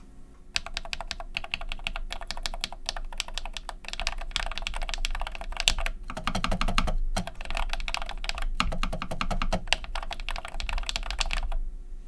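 Typing on a keyboard with lubed NMB Hi-Tek 725 switches: rapid, continuous keystrokes with a few brief pauses, stopping shortly before the end.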